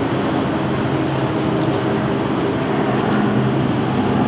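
Steady street traffic noise, with the low hum of vehicle engines running.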